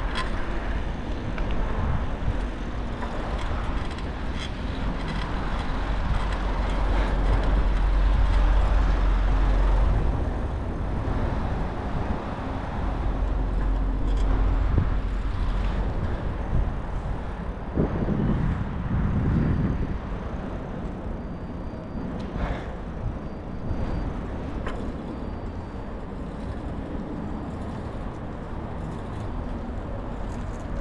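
Street traffic noise around a moving bicycle, with a low rumble that swells about six seconds in and eases after ten seconds; a vehicle passes close by past the halfway mark.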